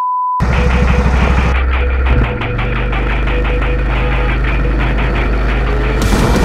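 A steady 1 kHz test-tone beep over the colour-bar card, cutting off less than half a second in. It gives way to loud music with held bass notes, mixed with the engine noise of go-karts running on the track.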